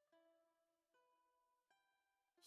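Very faint background music: three soft plucked-string notes, about one a second, each fading out.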